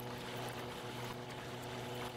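Yamaha V MAX SHO 250 outboard on a bass boat running at idle: a steady low engine hum mixed with wind and water noise. A single click sounds at the very start.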